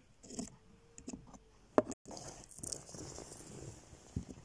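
Faint handling noises of a small plastic toy figure and miniature props being moved by hand: light taps and rubbing, with one sharp click a little before the middle.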